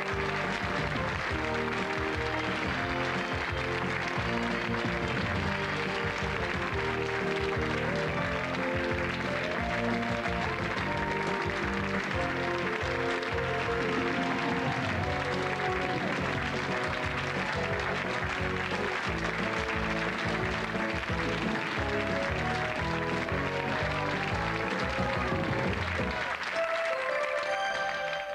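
Game-show closing theme music playing over steady studio audience applause.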